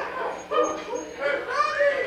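A person's voice close to the microphone giving a run of short, high-pitched yelps, each rising and falling in pitch, in a dog-like way.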